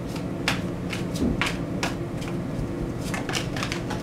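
Tarot deck being shuffled by hand: a run of sharp, irregular card snaps and taps, about three a second.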